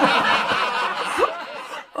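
A man laughing behind a hand held over his mouth: breathy, stifled snickering in quick pulses that trails off near the end.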